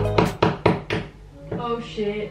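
A quick run of about five knocks within a second, growing fainter, like a hand knocking on a wall. A short spoken exclamation follows near the end.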